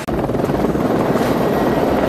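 A steady, dense rumbling noise that cuts in suddenly in place of the music, with no tune or beat in it.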